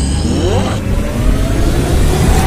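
A machine sound effect: a motor whirring up with rising pitch over a deep rumble, and a high whine that cuts off under a second in.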